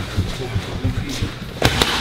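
Boxing gloves striking focus mitts: two sharp smacks in quick succession near the end, a one-two combination.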